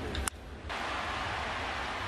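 Ballpark crowd noise, a steady even hiss of many voices that sets in about a third of the way through, after a single sharp click near the start.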